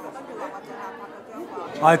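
Only speech: people talking over the chatter of diners, with a louder voice breaking in near the end.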